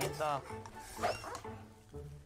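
Voices talking and laughing over background music.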